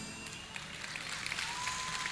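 The band's last note dying away, then an audience starting to applaud, quietly at first and building slightly.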